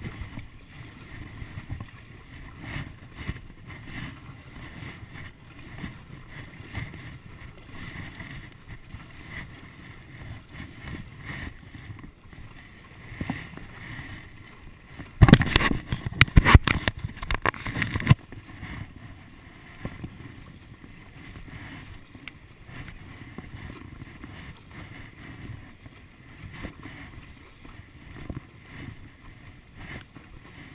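Water lapping and sloshing against a stand-up paddleboard with the splash of paddle strokes. About halfway through, a loud burst of close knocks and rubbing lasts about three seconds.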